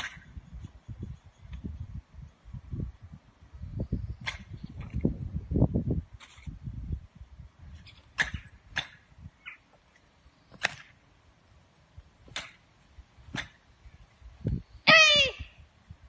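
A girl's karate kiai: one short, loud shout about a second before the end, falling in pitch, marking a strike in the Heian Yondan kata. Before it come a few faint sharp clicks and some low rumbling.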